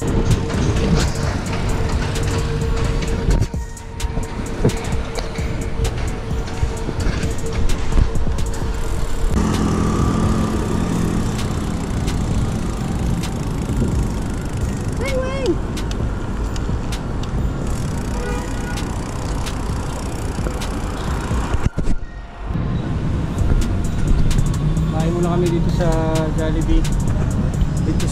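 Wind buffeting a bicycle-mounted action camera's microphone while riding on a city road, a rough, continuous rush with traffic underneath; it breaks off briefly twice.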